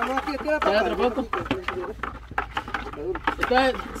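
People talking, with a few short clicks or knocks between the words.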